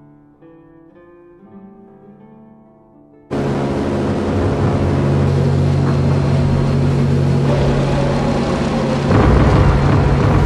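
Soft plucked guitar notes, cut off about three seconds in by the loud, steady drone of a formation of bomber aircraft engines. A deeper rumble joins near the end.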